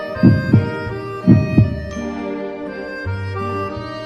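Two double heartbeat thumps, lub-dub then lub-dub about a second later, in the first half, over soft sustained instrumental music.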